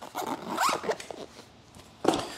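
Zipper on a Howie's skate-blade case being pulled shut, a quick run of rasping strokes lasting about a second.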